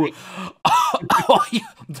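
A man's vocal reaction: a short breathy, cough-like burst, then a wordless exclaimed vocalisation that rises and falls in pitch, laugh-like.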